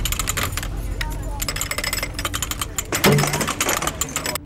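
Metal jangling and clinking, a quick irregular stream of light clinks, from Roman iron plate armour (lorica segmentata) moving.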